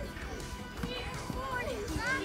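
Several voices shout and call out at once across a football pitch, the high voices of young players mixed with adults, with a couple of short knocks in between.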